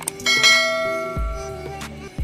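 A bell-like notification chime struck once just after the start, ringing and fading over about a second and a half, over background music.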